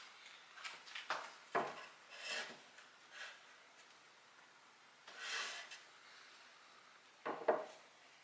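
Glass storage jars with bamboo lids being handled and set down on a wooden shelf: a few light knocks and scrapes of glass and wood, with a sharper double knock near the end.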